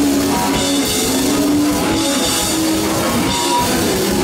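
Hardcore punk band playing live: a drum kit with cymbals, electric guitar and bass guitar together, loud and continuous.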